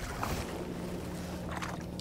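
Water lapping and sloshing at the side of a kayak, with a faint low steady hum under it and a few small splashes or knocks.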